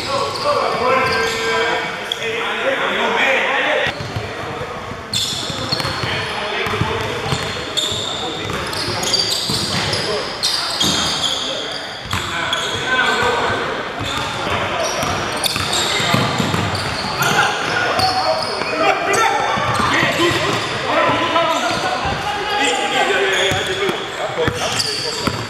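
Pickup basketball game on a hardwood gym floor: the ball bouncing, sneakers squeaking in short high-pitched chirps, and players calling out indistinctly, all echoing in a large gym.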